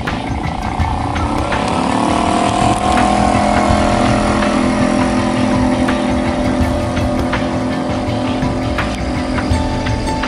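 Small outboard motor pushing an inflatable pontoon boat, rising in pitch as it accelerates over the first few seconds, then running steadily at speed.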